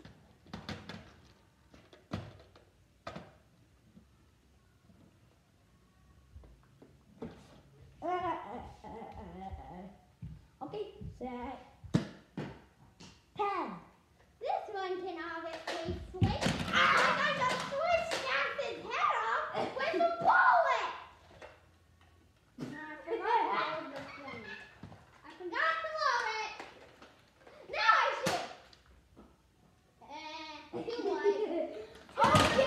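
Children talking, shouting and laughing, with scattered sharp clicks and knocks. About halfway through comes a heavy thud as a boy drops to the floor.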